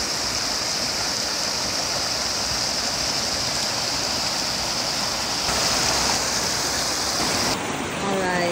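A mountain creek rushing over rocks below a small waterfall: a steady rush of water, a little louder from about five and a half seconds in.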